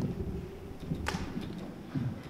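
A microphone stand being adjusted by hand: irregular low handling thumps and knocks, with one sharp swish about a second in.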